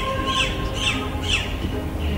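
A bird calling over and over, a short falling squawk-like call about twice a second, with a steady held tone behind it.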